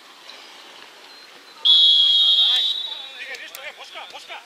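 Referee's whistle: one long blast that starts sharply about a second and a half in, loud and steady for about a second before tailing off, stopping play.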